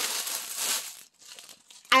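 Plastic bubble mailer crinkling as it is handled, stopping about a second in.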